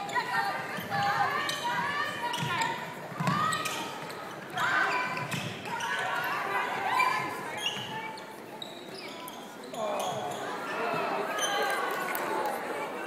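Voices calling out across a large, echoing indoor hall during netball play, mixed with short knocks of the ball and players' shoes on the wooden court.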